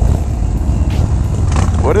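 Harley-Davidson V-twin motorcycle engines running at low speed, a deep steady rumble.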